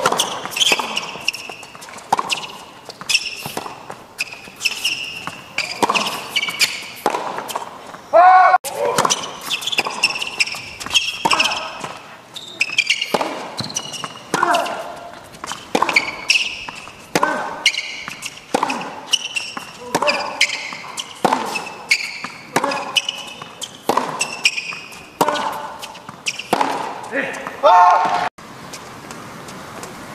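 Tennis rallies on an indoor hard court: repeated sharp impacts of the ball off racket strings and bouncing on the court, with short high squeaks of shoes on the court surface, over several points.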